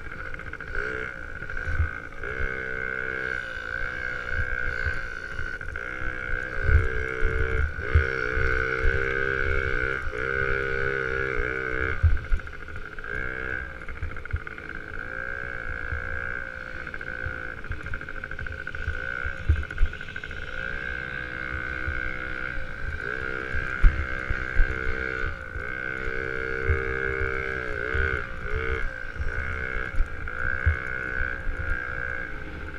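Small youth dirt bike engine revving up and down repeatedly as it rides around the track, over a steady high whine. Low thumps and wind rumble come through the on-bike camera.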